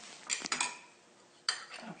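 A spoon stirring in a drinking glass, clinking against it a few times, with one sharp ringing clink about one and a half seconds in.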